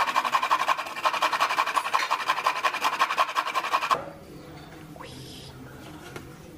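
Dried coconut being grated on a stainless-steel grater over a steel plate: quick, rhythmic rasping strokes with a metallic ring, stopping abruptly about four seconds in.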